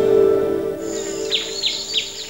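End of a TV weather programme's closing music: a held low note dies away, then short chirping sound effects come in, three quick falling chirps over a thin high tone, the opening of a sponsor ident.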